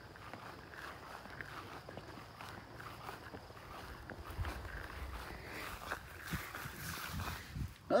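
Footsteps through mown grass, faint and irregular, with some rustle and handling noise from the phone being carried.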